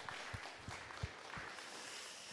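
Soft footsteps of a person walking, a few low thuds about a third of a second apart, over faint room noise.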